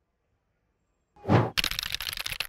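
A short whoosh transition sound effect a little over a second in, followed at once by about a second of rapid clicking, a keyboard-typing sound effect.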